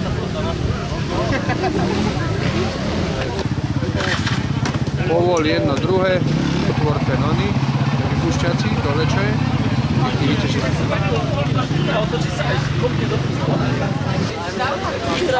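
Off-road motorcycle engine idling steadily, with voices talking over it.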